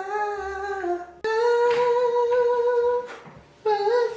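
A voice singing long held notes, three in a row. The first is slightly wavering. After about a second comes a higher, steady note lasting nearly two seconds. Near the end a shorter note wobbles.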